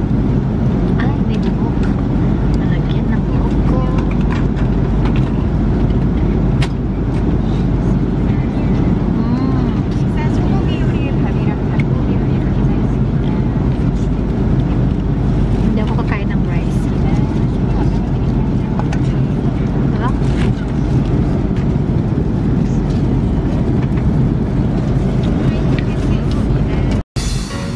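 Steady rumble and rush of an airliner cabin in flight, the engine and airflow noise running unbroken, with faint voices over it.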